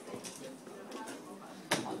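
Quiet lull between remarks: faint room sound, with one sharp click near the end just before a voice starts.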